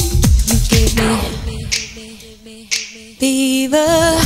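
Classic house music. A steady four-on-the-floor kick drops out about a second in, leaving a quiet breakdown of held low notes. A little past three seconds a loud held note comes in and steps up in pitch near the end.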